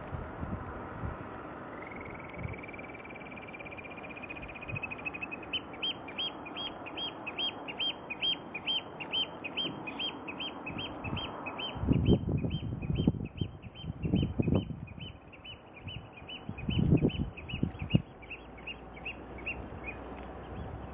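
Eurasian oystercatcher piping: a rising call about two seconds in, then a fast run of shrill repeated notes, about three a second, growing fainter in the second half. A few low gusts of wind buffet the microphone in the second half.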